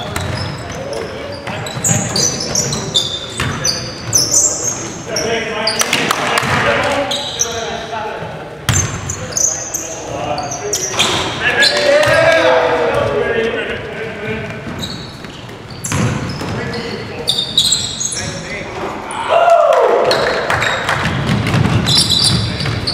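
Basketball being dribbled and bounced on a hardwood gym floor, with many short high sneaker squeaks and players shouting, all echoing in a large gym.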